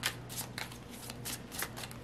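A deck of tarot cards being shuffled by hand: a quick run of soft card flicks, about five or six a second.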